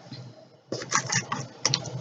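Crinkling and rustling of candy wrappers as a hand rummages in a snack box and pulls out a chocolate bar: a run of short, irregular crackles starting a little under a second in.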